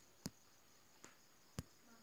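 Near silence broken by three faint, sharp clicks spread across the two seconds: taps on a tablet's touchscreen.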